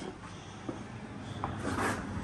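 Faint handling sounds: two light clicks, then a short rustle of plastic near the end.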